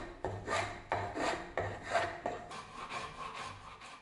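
A steel hand tool scraped in quick repeated strokes along a beech wood axe handle, shaping it, about two to three strokes a second, fading out near the end.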